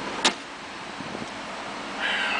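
A single sharp click about a quarter second in: the Cadillac Escalade's center console lid latching shut. Faint steady cabin background follows.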